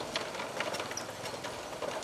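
Motorbike ridden across a wooden plank bridge: the engine running under a dense clatter of rapid, irregular rattles from the loose planks under the wheels.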